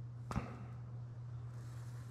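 A single sharp tap on a steel sheet about a third of a second in, over a steady low hum.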